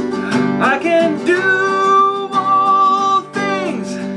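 Acoustic guitar strummed in a steady rhythm, with a man's voice singing long held, wordless notes over it.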